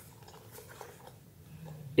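Faint handling noise from a suede Jacquemus bag and its canvas strap: soft rustles and small ticks as the bag is turned and the strap is worked loose at one end.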